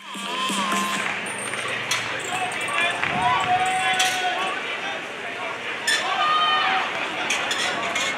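Crowd ambience at an outdoor beach volleyball arena: voices mixed with music over the venue's PA, with a few short sharp taps.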